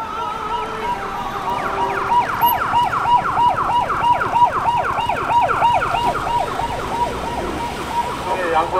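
Emergency-vehicle siren on a busy street: a wavering tone that switches, about a second and a half in, to a fast yelp of quick falling sweeps, about three a second.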